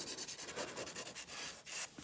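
Hand nail file for artificial nails (100/180 grit) rubbing in quick back-and-forth strokes over a hardened acrygel nail, shaping and smoothing it.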